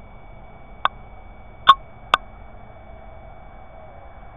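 Three sharp clicks of the NVP10 night vision device's push buttons, picked up by its own microphone, the middle one loudest and the last following it about half a second later: night vision mode with its IR light being switched on. Under them runs a steady faint hiss with a thin electronic whine.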